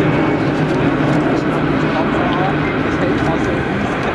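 Jet engines of a Boeing VC-25A (Air Force One) running at low power as it taxis: a steady, even hum with no rise or fall.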